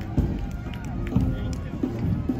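Several people's voices talking over one another, with music in the background.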